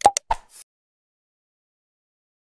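Mouse-click sound effects of an animated subscribe-and-share end screen: about four quick, sharp clicks within the first half second or so.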